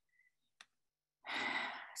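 Near silence, then about a second in a person's audible breath in through the microphone, lasting under a second, with a faint click shortly before it.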